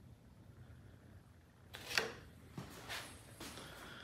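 Quiet room tone with a few faint clicks and knocks, the loudest about two seconds in.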